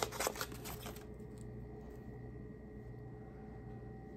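Crinkling and rustling of a small kraft-paper packet being unwrapped by hand, a quick run of sharp crackles that stops about a second in. After that only quiet room tone with a faint steady hum.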